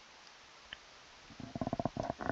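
Near silence with faint hiss, then about a second and a half in a man's low, creaky vocal fry, a fast rattle of roughly a dozen pulses a second, as he starts to speak.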